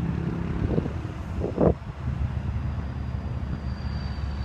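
A truck engine idling steadily, a low even rumble. Two short muffled bumps come about one second and one and a half seconds in, the second one louder.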